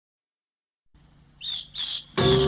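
Cartoon bat sound effect: two short, high squeaks, the second a third of a second after the first, after nearly a second of silence.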